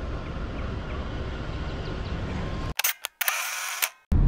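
Steady outdoor background noise, cut off about three seconds in by a camera shutter sound: a few sharp clicks and a short whirr as the photo is taken.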